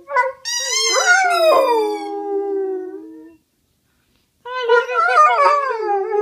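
A dog howling: one long howl that slides down in pitch, then after a pause of about a second a second howl that wavers up and down.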